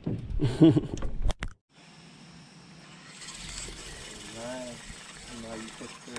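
A man laughs briefly, then a low, steady outdoor hiss with a faint voice now and then.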